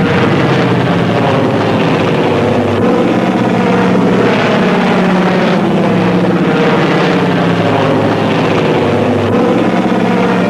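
Heavy engines droning steadily, a deep even hum.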